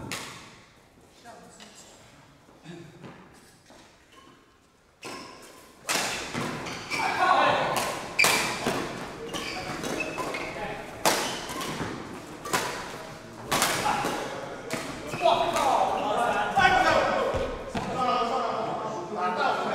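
A badminton rally starting about five seconds in: sharp cracks of rackets striking the shuttlecock, about one a second, with footfalls on the court and players' voices.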